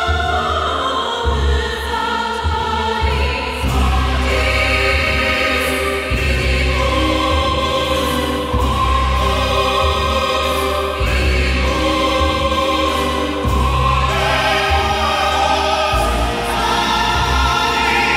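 Choral music: voices holding long notes over deep bass notes that change every second or two.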